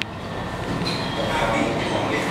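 Gym room noise: a steady rumble with indistinct voices, opening with a sharp click.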